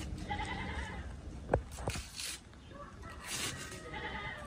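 A goat bleating, a wavering call near the start and another near the end, with two sharp snaps in between.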